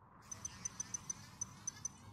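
Faint twinkling sound effect of an animated title sequence: about a dozen short, very high pings in an irregular run over a low faint hum.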